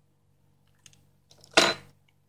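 Hands handling a loose phone display panel over the opened phone frame: a faint click about a second in, then one short, loud sound near the end.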